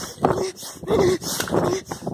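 A person's voice making short, pitched sounds that repeat about three times a second, like breathy panting or whimpering.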